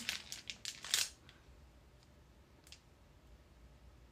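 Clear plastic packaging crinkling as it is handled, a cluster of quick crackles in the first second, then quiet apart from one faint click near the three-second mark.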